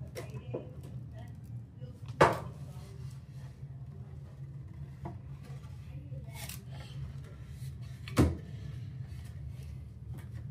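Two sharp, loud knocks about six seconds apart, one a couple of seconds in and one near the end, over a steady low hum, with fainter clicks and handling noise between them.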